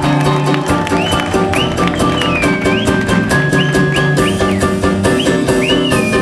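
Live band playing an instrumental passage: drum kit, bass and congas keep a steady groove while a high lead line, played on violin, slides up and down in pitch several times and holds one long note in the middle.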